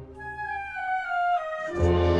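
Wind band playing a Spanish processional march. The full band drops away and a single melodic line steps downward on its own. The full band comes back in with heavy low brass near the end.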